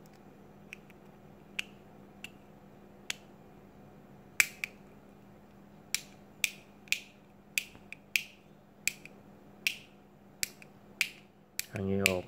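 Plastic rocker of a wall light switch clicking back and forth by hand. It starts with a few soft clicks, then gives sharper snaps about two a second from about four seconds in. The freshly reassembled switch is being rocked to test that it locks into its on and off positions.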